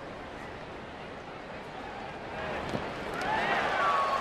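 Ballpark crowd murmur that swells into louder crowd noise and cheering in the last second or so, with a few shrill gliding cries rising above it.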